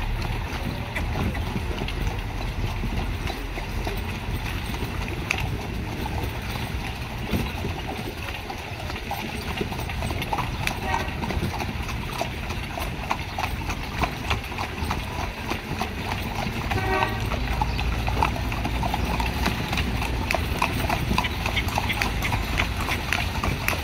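A carriage horse's hooves clip-clopping steadily on a wet paved street as it pulls a horse-drawn carriage, a rapid run of sharp hoof strikes over a low rumble.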